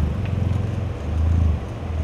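Audi SUV engine running close by, a low hum that swells and dips.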